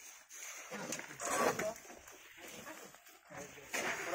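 People's voices calling out and talking in short bursts, with quieter gaps between.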